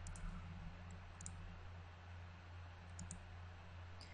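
Faint computer mouse button clicks: one click, then two quick pairs of clicks about a second and three seconds in, over a low steady hum.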